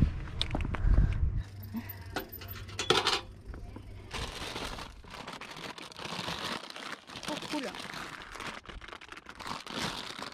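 Brown paper bag crinkling and rustling as it is handled, with a low rumble in the first second or so.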